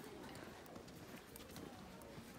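Faint store background noise: a low murmur of distant voices with a few light, irregular clicks.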